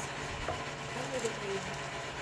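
A faint voice in the background, with light handling noise from cardboard boxes and packaging and a short tap about half a second in.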